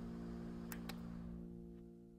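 The closing held chord of an electronic dance remix fading out. A wash of hiss at the start dies away, and two short clicks come just under a second in.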